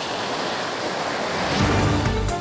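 Sea surf washing onto a sandy beach: a steady hiss of breaking waves. About one and a half seconds in, music with a strong bass comes in over it.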